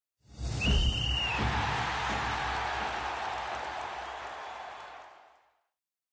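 Intro sound effect: a rush of noise, a whoosh with a low rumble, starts suddenly. A short high whistle tone sounds near its start, and the whole sound fades away over about five seconds.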